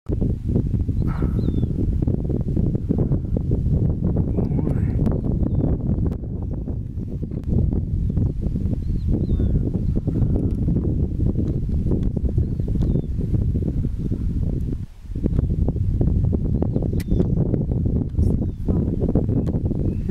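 Herd of wildebeest on the move: a dense, continuous drumming of many hooves, with a few short animal calls above it.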